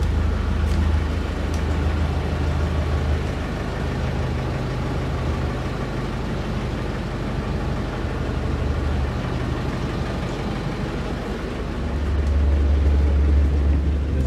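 Houseboat's generator engine running steadily with a low hum, muffled at first and growing clearly louder near the end as it is approached.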